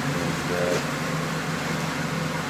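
A steady low machine hum, with a brief vocal sound about half a second in.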